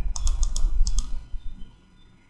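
About six light clicks from a computer keyboard or mouse in quick succession during the first second, as the document scrolls down, over a low steady hum; the clicks stop near the end.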